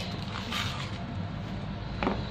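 A wire whisk stirring thick cake batter in a plastic bowl, a steady low mixing noise.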